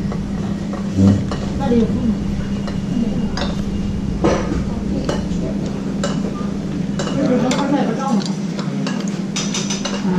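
Chopsticks and spoons clicking and clinking against bowls during a meal, scattered light knocks over a steady low hum.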